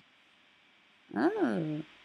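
A woman's drawn-out 'ah', its pitch rising then falling, about a second in: a mildly let-down reaction when her attempt to select everything does not work. It comes just after a single mouse click.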